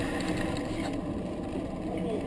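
Outdoor street-market ambience: a steady low rumble with a few faint scattered clicks.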